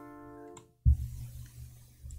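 Instrument loop playing through Reason's Thor synthesizer used as an effect, with its state variable filter's cutoff being turned down. A held chord fades and cuts off, then a new low note starts with a sharp attack just before halfway and rings on.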